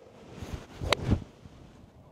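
A PXG 0311 Gen7 XP seven iron striking a golf ball from the fairway: a single sharp click about a second in.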